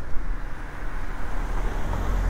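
A taxi car driving past close by on the street, its tyre and engine noise growing as it nears.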